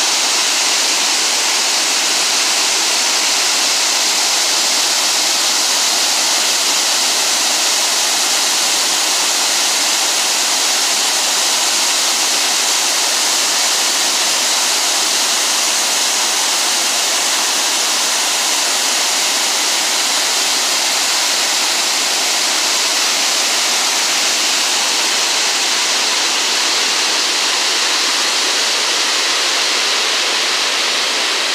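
Water released through a dam's outlet gates, shooting out in wide white jets and crashing into the churning tailwater below. A loud, steady rushing roar with no breaks.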